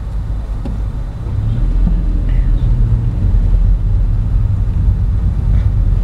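A car's engine and road noise heard from inside the cabin: a steady low rumble that grows louder about a second and a half in.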